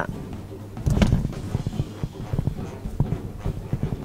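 A toy poodle puppy screaming and yelping at the vet, heard from inside a car, rising about a second in and then going on in weaker, irregular bursts.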